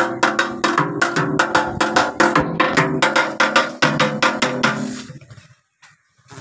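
Barrel drum (dhol) played with a stick in a fast, even beat of about five strokes a second over a steady droning tone. It fades out and stops about five seconds in.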